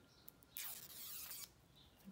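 Protective plastic coating being peeled off a clock hand: a faint, soft rasp lasting about a second, with a few small clicks before it.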